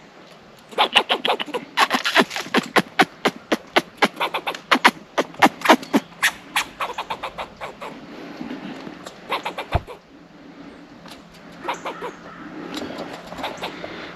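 A squirrel barking: a quick run of short, sharp barks, about five a second, over the first half, then a few scattered barks later on. It is the squirrel's alarm call, angry at a person in its tree.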